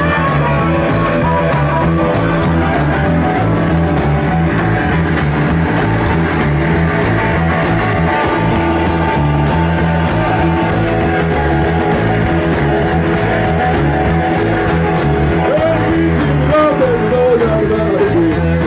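Garage rock band playing live, with electric bass, drums and guitar driving a steady beat. Wavering vocals come in near the end.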